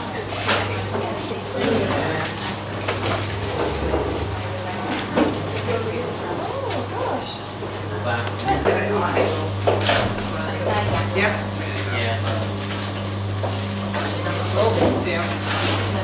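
Several people chatting in a room, with light clinks and clatter of trays and utensils, over a steady low hum.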